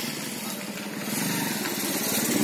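A small engine running steadily with a fast even pulse, getting a little louder about halfway through.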